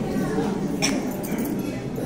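Many voices chanting together in a continuous, overlapping drone, with a short sharp click about a second in.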